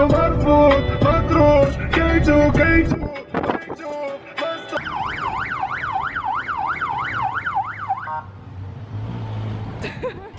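Music with a heavy beat for about three seconds, then an electronic siren yelping, its pitch sweeping up and down about three times a second for some three seconds, followed by a low steady rumble.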